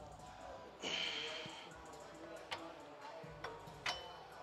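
Background music playing with a steady beat, over which a loud, hissing forceful exhale comes about a second in, from a lifter straining through a barbell squat rep. A few short clicks follow near the end.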